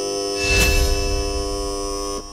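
Game-show failure buzzer: a harsh, steady electronic buzz that starts abruptly and lasts about two seconds, with a low boom coming in about half a second in. It signals that the microphone the contestant sang into was not the live one.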